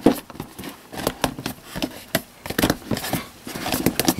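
A tight cardboard sleeve being worked off a product box by hand: irregular scuffs, taps and sharp clicks of cardboard rubbing and flexing.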